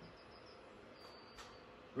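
Near silence: quiet room tone with a faint high-pitched whine and one soft click a little past halfway.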